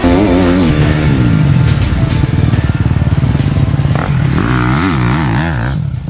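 Motocross dirt bike engine revving hard as the bike rides, its pitch rising and falling in quick swells at the start and again from about four seconds in.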